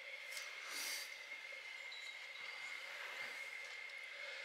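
Quiet room tone carrying a steady, faint high-pitched whine, with a soft breathy rustle about half a second to a second in.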